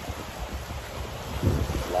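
Wind buffeting the microphone in gusts, with choppy lake waves washing against a rocky shore beneath it. The wind grows louder about one and a half seconds in.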